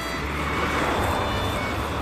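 A small car passing close by, its tyre and engine noise swelling to a peak about a second in, then fading as it goes past.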